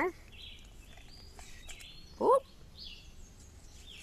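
A woman's short surprised "ooh" about halfway through, her reaction to splashing wet plaster-casting mix onto her clothes, over faint background noise with a few soft high bird chirps.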